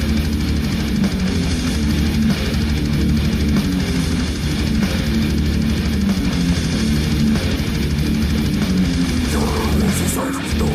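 Brutal death metal: heavy distorted electric guitar riffing with drums, loud and unbroken.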